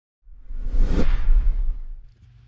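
Whoosh sound effect of a TV news logo sting: a rising rush that cuts off sharply about a second in, over a deep low rumble that fades out near the end.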